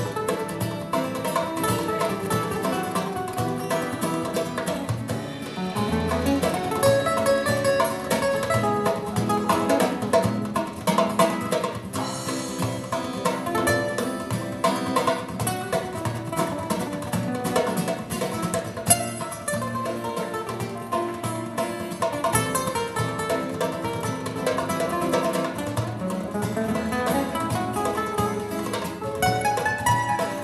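Live instrumental music: two guitars, one a nylon-string acoustic, playing a busy plucked line over a kit-and-hand-drum percussion backing.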